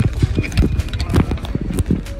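Quick, irregular knocks and thumps, several a second, as a person moves about on a wooden structure.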